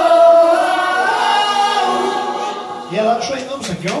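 A live rock band's last sustained note ringing out and slowly fading, then audience shouts and clapping starting about three seconds in.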